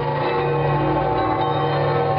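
Church bells ringing: several bell tones overlap and hold steady as one sustained, ringing chord.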